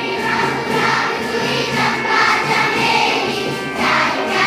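A large crowd of schoolchildren singing a song together, many voices in unison, swelling and easing phrase by phrase.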